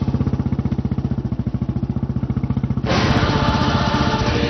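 Dramatic background score: a low, rapid, evenly throbbing drone, with fuller music coming in sharply about three seconds in.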